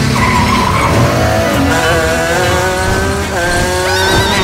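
Car-chase sound effects: tyres squealing in wavering high tones over a low engine rumble.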